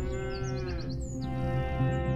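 Background film score: a steady drone with a held melodic note in the first second, and short high chirps above it.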